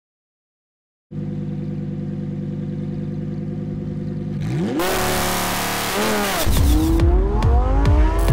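Lamborghini Huracán EVO's V10 engine idling steadily from about a second in, then revving in rising sweeps from about halfway through, dipping and climbing again. Electronic music with a deep bass beat comes in under the engine near the end.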